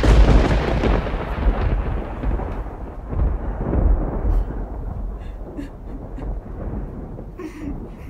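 Thunder sound effect: a loud, deep rolling rumble that fades slowly over several seconds, with a few faint crackles near the end.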